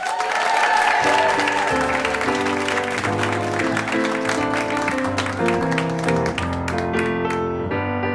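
Audience applause welcoming a chorus, with piano chords starting about a second and a half in; the clapping thins out near the end while the piano carries on.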